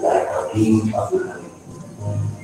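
A voice speaking a few words, dying down in the second half.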